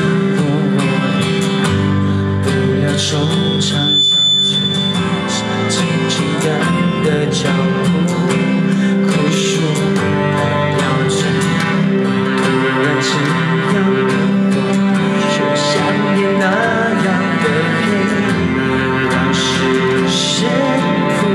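Live band performance of a pop-rock ballad: a male lead vocal sung into a microphone over guitar and band accompaniment, amplified through a PA. A brief high steady tone sounds about three to four seconds in.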